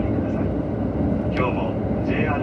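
Steady low running rumble of a KiHa 183 series diesel railcar heard inside the cabin while the train is rolling.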